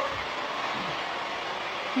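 Steady background hiss with no distinct event: the noise floor of a recorded livestream's audio.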